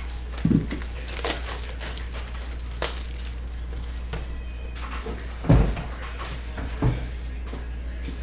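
Cardboard trading-card box being handled and opened on a table: a few soft thumps and light clicks, the loudest thump about five and a half seconds in, over a steady low hum.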